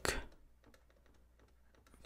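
Faint clicks and taps of a stylus writing on a tablet screen, with a sharper click at the start.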